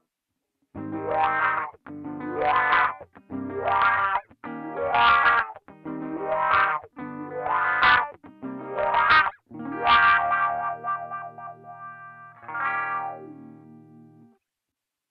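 Distorted electric guitar through a BOSS MS-3 multi-effects switcher's "7STR WAH" pedal wah. About eight strummed chords, each swept upward in tone by the wah. A last chord is left ringing from about ten seconds in and fades away.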